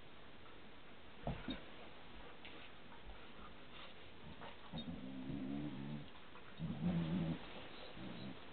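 Husky-type dog growling in play: two low, drawn-out grumbles of about a second each in the second half, after a brief knock about a second in.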